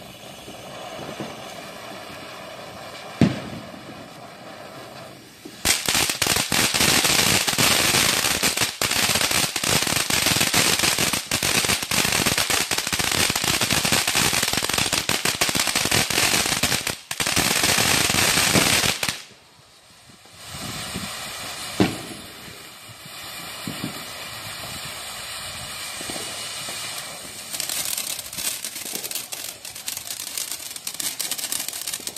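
Fireworks going off: crackling with a sharp bang about three seconds in. A long, loud stretch of dense crackling follows and stops abruptly about two-thirds of the way through. Then comes another single bang and quieter crackling that builds again near the end.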